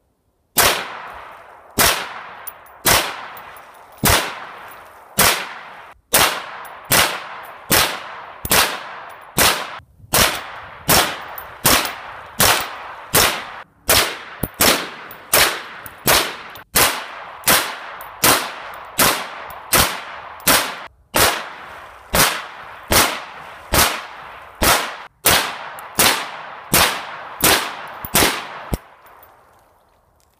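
Grendel R31 semi-automatic carbine firing .22 Magnum (.22 WMR) rounds in a long string of single shots, about one a second, each sharp crack followed by a short fading echo.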